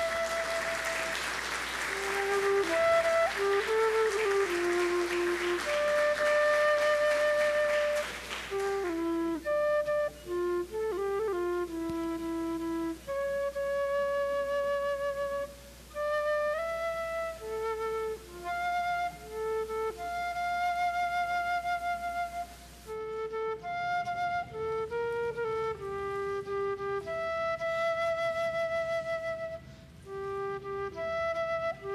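A flute plays a melody of single held notes. Applause runs under it for about the first eight seconds.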